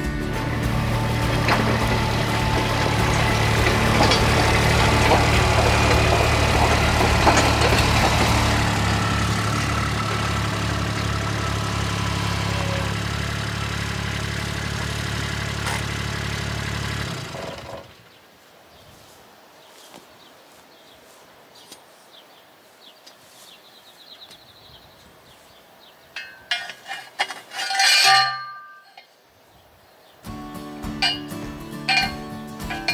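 Kubota utility vehicle engine running steadily for the first half, then it stops suddenly and quiet outdoor background follows, with a short run of loud metallic knocks near the end.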